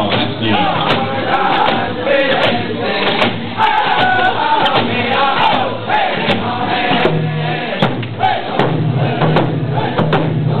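A Cree round dance song: a group of singers sing together over hand drums beating a steady pulse, with a crowd's voices around them.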